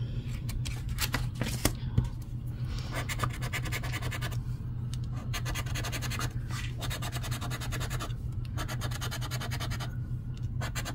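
A large coin scratching the coating off a scratch-off lottery ticket in rapid strokes, with a few short pauses, over a steady low hum.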